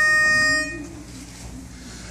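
Pitch pipe blown with one steady reedy note that stops under a second in, giving the quartet its starting pitch. A low voice hums faintly beneath it as it ends.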